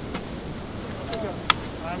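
A sharp metallic click about one and a half seconds in, the loudest sound here, with lighter clicks before it: an ambulance stretcher's side rail latching into place. Brief voices and a low outdoor rumble run underneath.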